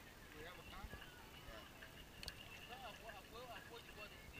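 Faint voices talking quietly over a steady low hiss.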